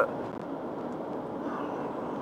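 Steady drone of a car driving at speed on a dual carriageway, heard from inside the cabin.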